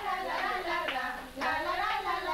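Voices singing, with a few hand claps.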